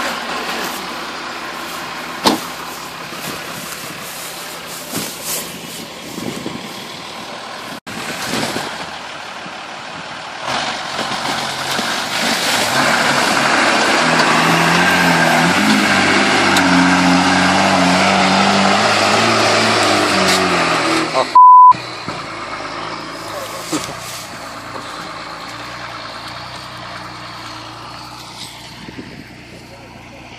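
An off-road SUV's engine revving hard under load, climbing in pitch for about ten seconds as the bogged vehicle tries to drive out of the mud, then dropping off. A short, very loud electronic beep cuts in right after, and the engine runs on more quietly afterwards.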